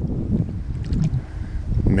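Wind rumbling on the microphone, with a few faint splashes about a second in from a hooked salmon thrashing at the surface.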